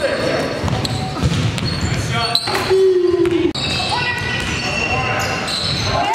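Live game sound of an indoor basketball game: players' voices echoing in a large gym, with a basketball bouncing and short high squeaks of sneakers on the court floor.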